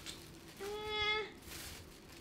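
A single short, high-pitched vocal sound held on one steady note for under a second, about half a second in.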